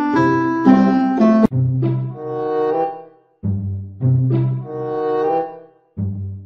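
Background music: a melody of held, pitched notes over low bass notes, breaking off briefly about halfway through and again near the end. A sharp click comes about a second and a half in.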